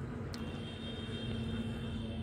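Steady low rumble of distant road traffic. About a third of a second in, a thin high-pitched tone starts with a click and holds steady.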